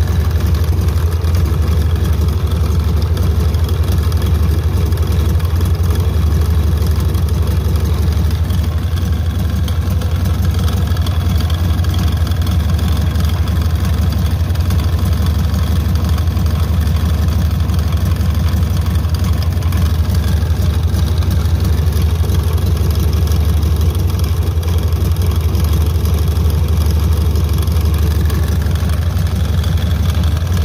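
Volkswagen Fusca (Beetle) air-cooled flat-four engine idling steadily and loudly, turning the accessory belt during a test run of a homemade belt tensioner for its retrofitted power-steering pump.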